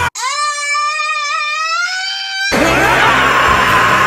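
A person's high-pitched scream, held for about two and a half seconds, rising slightly in pitch. It cuts off suddenly and gives way to a louder anime battle scream with music.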